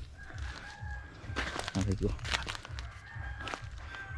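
A rooster crowing in the distance, quiet, its long held note heard twice, near the start and near the end. Light crunching and rustling of footsteps in dry undergrowth comes through between the crows.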